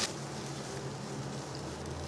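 Quiet steady background hum with faint room noise and no distinct events.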